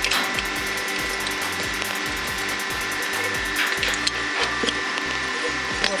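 A pipe wrench turns the seized crown nut off a heat-loosened water valve: repeated metal-on-metal scraping and clicks as the stuck thread gives. Under it runs a steady background hum.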